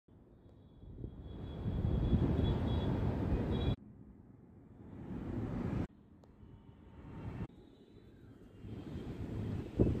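Wind buffeting the microphone outdoors: a low, uneven rumble that swells and fades and cuts off abruptly three times.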